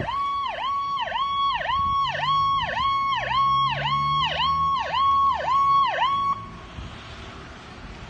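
Emergency vehicle siren on an ambulance supervisor's SUV, cycling quickly: a high steady tone that dips sharply and springs back about twice a second. It cuts off suddenly a little over six seconds in.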